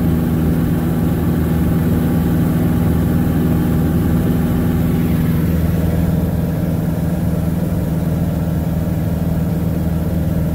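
Piper Super Cub floatplane's piston engine and propeller droning steadily in cruise, heard from inside the cockpit.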